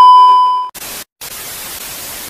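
Colour-bar test-tone beep: a loud, steady, high beep that cuts off under a second in. It is followed by a steady hiss of TV static, broken by a short dropout.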